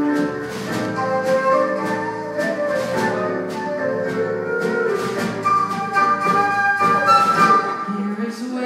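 Live band playing an instrumental passage, with a flute carrying melody lines over a steady beat.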